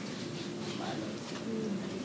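A man's voice held in a low, drawn-out hesitation sound between words, a soft 'my…' that trails on rather than quick speech.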